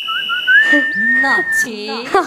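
A high whistled note that climbs in a few small steps, then holds one pitch for about a second before cutting off, with a voice sounding beneath it.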